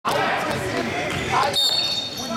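Indoor basketball gym din: basketballs bouncing on the hardwood floor mixed with overlapping voices, echoing in the hall. A steady high-pitched squeak sets in about one and a half seconds in.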